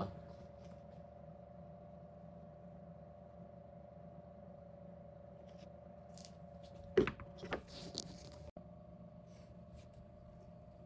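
Steady low hum with a faint even tone. About seven seconds in comes a sudden sharp knock, then a few clicks and rustling handling sounds, and the sound cuts off abruptly just after.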